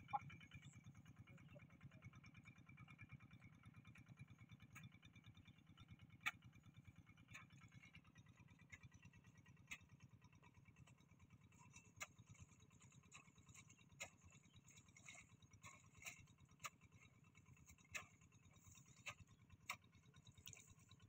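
Faint, steady running of a distant two-wheel hand tractor's engine as it ploughs furrows, with a few light clicks scattered through it.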